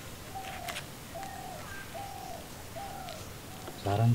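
A bird calling: a short, slightly falling note repeated about every half second. Near the very end a man's voice breaks in loudly.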